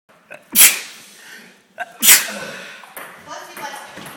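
A person sneezing twice, about a second and a half apart; each sneeze is loud and sudden.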